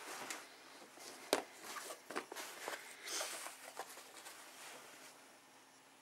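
Canvas tote bag being lifted and turned over by hand: fabric rustling with scattered light clicks and knocks, one sharper tap about a second in.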